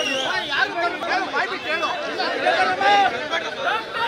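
Crowd chatter: many voices talking over one another, with no single speaker standing out.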